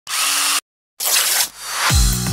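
Logo-intro sound effect: two short bursts of harsh, hissing noise, each about half a second long with a brief dead silence between them, then a rising swell of noise leading into the music.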